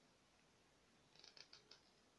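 Metal knitting needles clicking faintly together as stitches are worked: a short run of about six light clicks about a second in, otherwise near silence.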